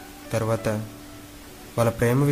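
A man's voice in conversation: a short phrase about half a second in, then a pause, and speech starting again near the end.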